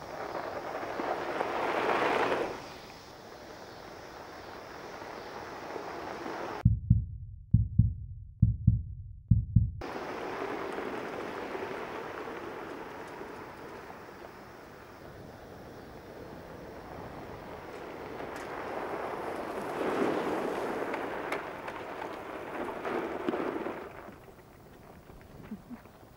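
Two golf carts racing away over gravel: a rushing of tyres and motors that swells near the start and again later. A few deep thumps, like wind hitting the microphone, come about a third of the way in.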